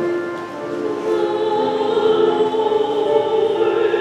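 Church choir singing with long held notes. The sound dips briefly about half a second in, then swells again.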